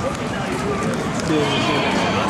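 City street ambience: a steady hum of traffic and crowd noise with people's voices in the background, growing a little busier in the second half.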